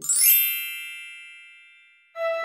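A bright chime sound effect: a quick rising shimmer, then a ringing ding that fades away over about two seconds.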